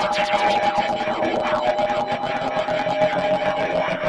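Algorithmic electroacoustic computer music made in SuperCollider: two steady high tones held under a dense, restless flurry of short gliding chirps and clicks.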